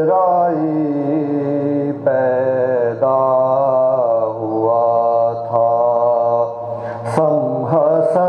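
Unaccompanied men's voices chanting Urdu mourning poetry in long, drawn-out melodic phrases. Each wavering note is held for a second or two, with short breaks between phrases.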